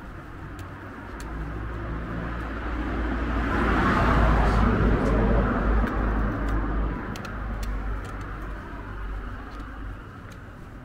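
A car passing along the street, its tyre and engine noise building over a few seconds, peaking near the middle and fading away.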